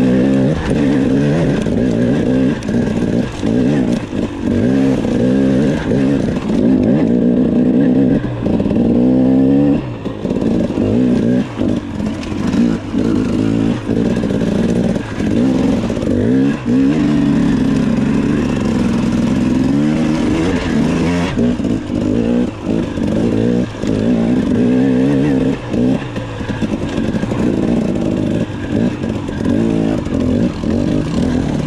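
KTM enduro dirt bike engine running and revving up and down, heard close up from the rider's position, with frequent short knocks and clatter as the bike bumps over rocks and roots.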